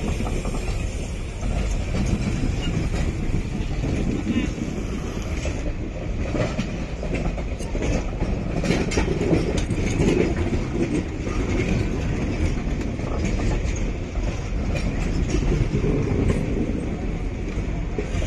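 Indian Railways ICF sleeper coaches rolling past close by: a steady rumble of steel wheels on the rails, with repeated clicks as the wheels cross the rail joints, more frequent from about six seconds in.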